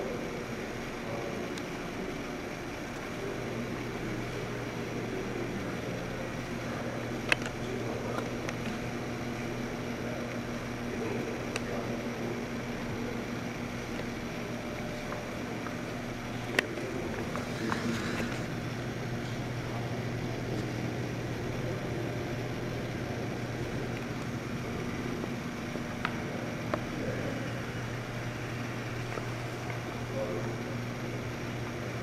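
Steady low hum of indoor room tone, with a few sharp clicks.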